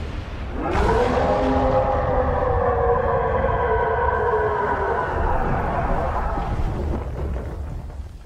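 Eren's Attack Titan roaring, in a fan-remade English-dub version: one long, deep bellow that starts about half a second in, rises briefly, then sinks slowly in pitch and fades out about seven seconds in. A low rumble runs underneath.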